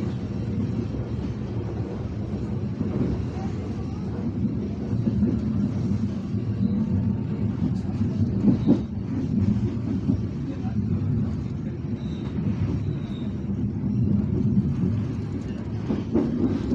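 Passenger train coach running along the track, a steady low rumble of wheels on rails with a sharper clunk about halfway through.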